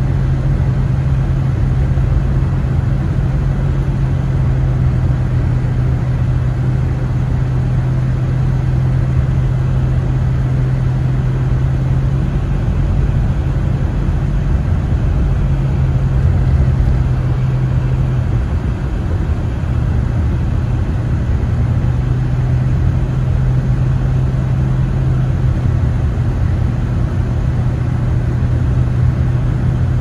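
Car cabin noise while driving on a snow-covered road: a steady low engine hum over rumbling road and tyre noise. The hum drops away for a couple of seconds about two-thirds of the way through, then returns.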